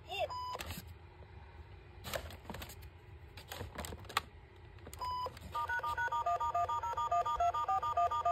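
A malfunctioning talking Nia toy engine (Thomas & Friends, 2024) giving a single electronic beep near the start and another about five seconds in, then a fast run of short electronic beeps jumping between several pitches, several a second. A few clicks in between.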